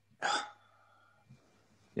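A single short, sharp burst of a person's voice about a quarter second in, not a full word, coming over a video-call line.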